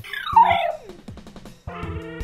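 A small terrier giving one short howling whine that slides down in pitch, over background music.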